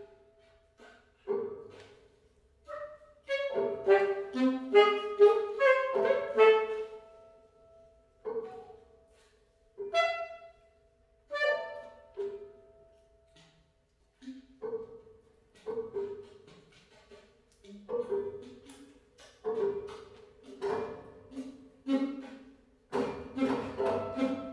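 Free improvisation on saxophone and piano: sparse, separate short notes and small clusters, each dying away, with brief silences between them. The notes come thicker around the first third and again near the end.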